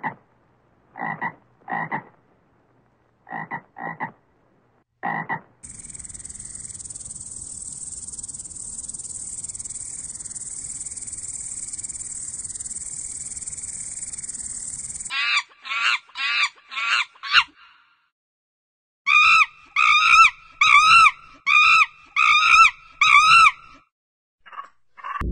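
A frog croaking in short, separate calls for the first five seconds or so. An insect then makes a steady, high buzzing stridulation for about nine seconds, typical of a grasshopper or cricket. After that comes a series of pitched, arching animal calls of another kind, about two a second, in two runs.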